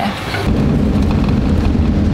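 Steady low rumble of a camper van driving, engine and road noise heard from inside the cab, starting about half a second in.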